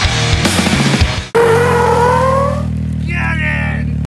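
Heavy rock intro music with pounding drums, which breaks off abruptly about a second and a half in and gives way to a held low droning chord with a rising tone sliding over it.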